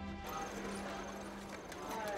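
Soft string music ends in a lingering low note as a noisy outdoor-like background takes over, full of light, irregular clacks and knocks. A voice or call begins near the end.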